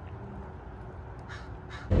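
A bird calling with a few short, harsh caws in the second half, over a low steady outdoor background.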